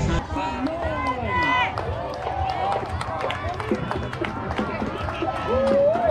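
Boots of a marching rifle unit striking the asphalt in step, as a run of sharp footfalls. Spectators' voices call out and cheer over them, with one long held shout near the end.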